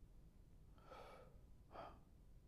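Near silence with two faint breaths from a man on a clip-on microphone, one about a second in and a shorter one near the end.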